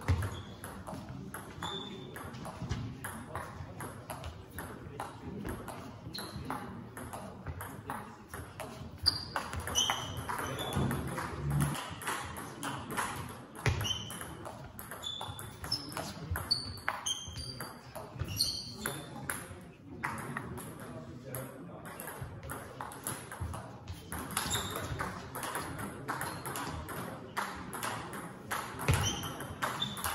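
Table tennis rally: the plastic ball clicking off the bats and bouncing on the table in quick exchanges, over and over, with short high squeaks in between and voices murmuring in the background.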